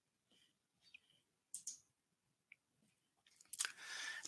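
Near silence with a few faint mouth clicks, then a breath drawn near the end, just before speech resumes.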